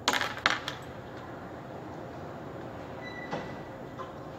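Clatter of small electronics and cables being set down on a hard floor: two sharp rattling hits in the first half second, then a light knock past the middle, over a steady background hum.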